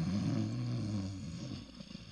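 A man snoring: one long snore that fades away near the end.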